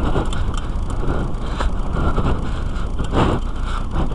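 Steady rumble and rattle of riding over a sandy dirt track, picked up by a cheap helmet camera's microphone, with three louder knocks spread through it.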